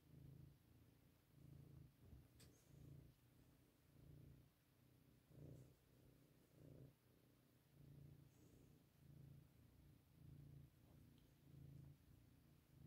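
Domestic cat purring faintly, a low buzz swelling and fading in pulses a little more than once a second.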